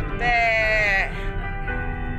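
A song with a singer holding one long note for under a second, near the start, that dips in pitch as it ends, over steady backing music.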